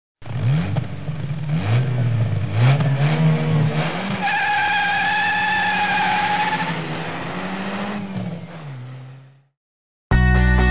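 Engine sound effect accelerating hard, its pitch climbing and dropping back through several quick gear changes. A high tyre squeal then holds for a couple of seconds over the engine, and the engine fades out near the end.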